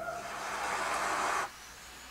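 Concert audience applauding as the last orchestral note dies away at the end of a live performance, cut off suddenly about one and a half seconds in, leaving only faint studio room tone.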